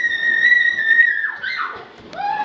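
A child's long, high-pitched squeal, held on one steady note for about a second and a half, then dropping off.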